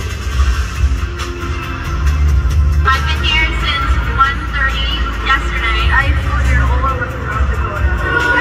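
Video soundtrack played over a large arena's speakers: steady bass-heavy background music, with people's voices talking over it from about three seconds in.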